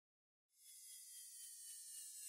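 Near silence: dead silence for the first half second, then a faint high hiss with a few faint steady tones.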